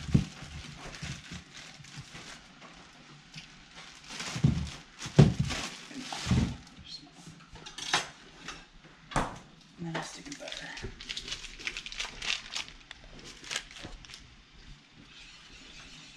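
Kitchen handling noises around a large aluminium stockpot on an electric stove: scattered clinks, knocks and a few heavier thuds at irregular moments, with faint talk in the background.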